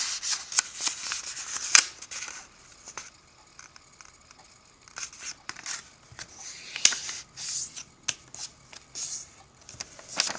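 A sheet of origami paper being folded in half and its crease pressed flat by fingers: rustling and crinkling with sharp crackles. It comes in bursts, with a quieter stretch about three to five seconds in.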